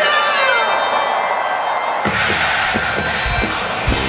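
Live rock band on an outdoor stage: held keyboard chords with a falling glide, then the drums and full band come in about two seconds in, with a large crowd cheering.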